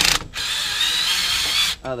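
Cordless drill with a socket running steadily for about a second and a half, driving a metric bolt into the threaded removal hole of a stuck rear brake drum so the bolt presses against the hub and pushes the drum off. It starts shortly after a brief burst and stops just before the end.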